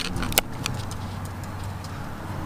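A few light clicks and clinks from a car seat's fittings being handled, over a low steady hum.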